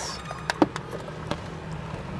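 A few light clicks and rustles from a clipboard and its paper pages being handled, over a low steady hum.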